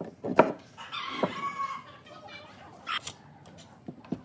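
Solid pine boards knocking together on a wooden workbench as glued planks are pressed into place, with a sharp knock about half a second in and lighter knocks after. A pitched animal call sounds in the background about a second in.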